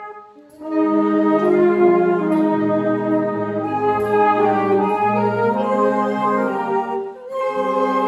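Brass band playing a hymn in slow, sustained chords, with brief breaks between phrases about half a second in and near the end.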